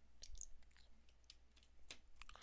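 Near silence with a few faint clicks of plastic LEGO bricks being handled and pressed together, a small cluster near the start and another near the end.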